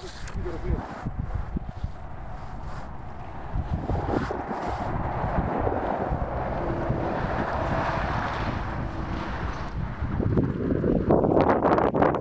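Steady wind rumbling on the microphone, with a rushing hiss that swells in the middle. A voice comes in near the end.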